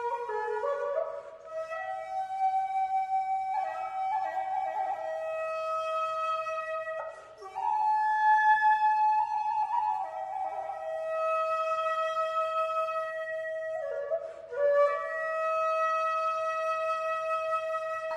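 Music: a slow solo flute melody of long held notes, stepping between pitches with short slides.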